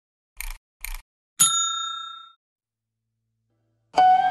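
Two short clicks, then a bright bell-like ding with several ringing tones that fades out over about a second: a subscribe-button animation's click-and-notification-bell sound effect.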